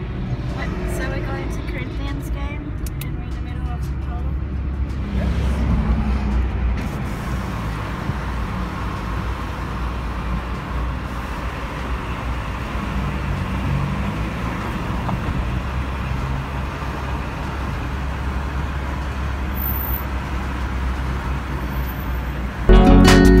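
Steady road and engine rumble heard from inside a moving vehicle on an expressway, with faint voices in the background.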